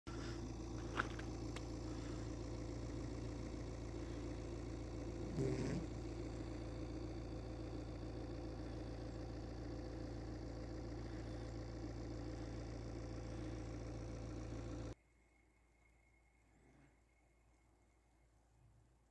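A steady low mechanical hum holding one pitch, like an engine or motor running, with a click about a second in and a brief louder sound around five and a half seconds. It cuts off suddenly about fifteen seconds in, leaving near silence.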